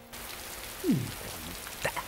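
Steady heavy rain falling on a tiled roof, with a short low voice sound about a second in and a sharp click near the end.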